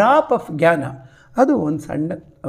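Only speech: a man talking in a lecture.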